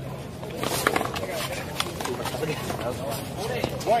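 Rubber ball struck by hand and rebounding off a concrete wall and court during a one-wall rally. It makes a string of sharp smacks: the loudest comes just under a second in, several follow, and another loud one comes near the end. Faint talk is heard underneath.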